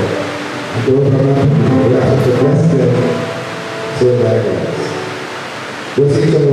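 A man singing slowly into a microphone, in phrases of two to three seconds with long held notes.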